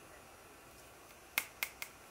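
Three sharp clicks of small hard clear plastic parts, the ear-scoop tips and their little tube, handled between the fingers, coming in quick succession about a second and a half in.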